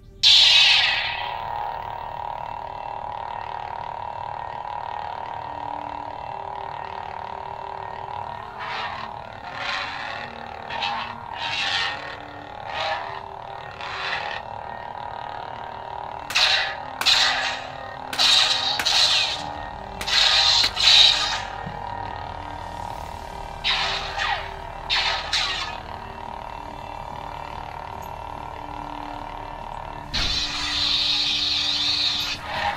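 Budget LGT RGB lightsaber playing its toy-like default sound font: the blade ignites with a loud burst, then hums steadily. From about nine seconds in comes a run of short swing swooshes, some in quick pairs, before the hum runs on alone near the end.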